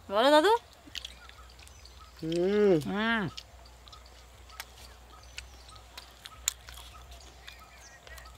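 A person's voice: two short, high, gliding calls without clear words, one at the start and a longer two-part one about two seconds in. Between and after them, low outdoor background with faint scattered clicks.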